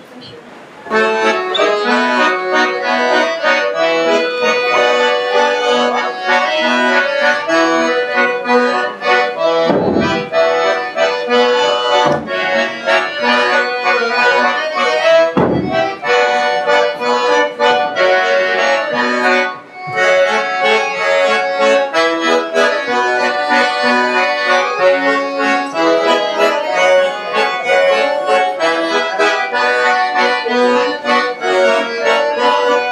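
Accordion playing a lively traditional folk tune, starting about a second in after a short pause and running on with a steady beat, with a brief break partway through.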